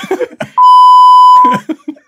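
A censor bleep: one loud, steady electronic beep on a single pitch, about a second long, starting about half a second in.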